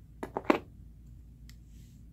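Three quick clicks of hard plastic, the third the loudest, as a red plastic fidget spinner is handled and shifted onto an open palm, followed by one faint click.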